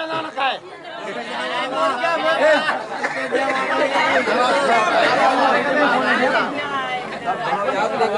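Several voices talking over one another: a chatter of overlapping speech with no single clear speaker.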